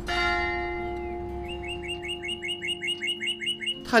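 A ringing note sounds and slowly dies away. From about a second and a half in, a small bird chirps a quick, even run of about ten short notes, roughly four a second.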